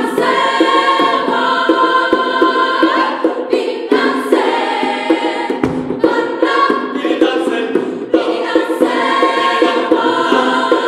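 Mixed choir singing in close harmony. Short hand-drum strikes recur in a steady pattern underneath.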